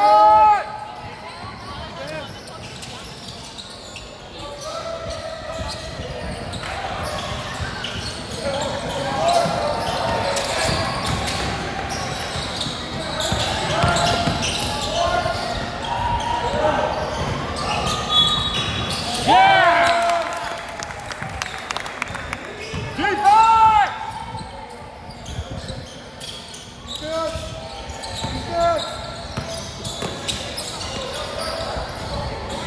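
Basketball game on a hardwood gym floor: the ball bouncing and players' voices calling out, echoing in the hall. A few loud, short, high-pitched squeals stand out, near the start and about 19 and 23 seconds in.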